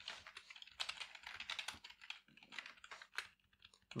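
Typing on a computer keyboard: a quick run of soft keystrokes that thins out near the end.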